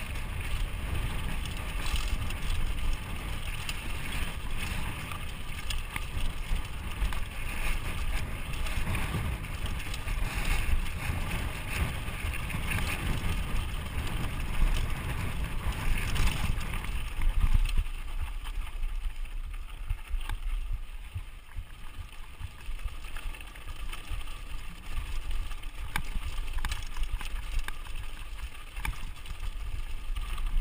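Wind buffeting the camera microphone over the tyre rumble and chatter of a mountain bike rolling down a dusty dirt singletrack, with occasional sharp clicks and rattles from the bike. The low rumble eases a little past the middle.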